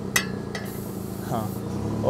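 A single sharp metallic tap just after the start, over a steady low mechanical hum in the background.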